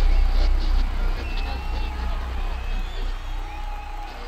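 A low rumble that slowly fades, with faint voices mixed in.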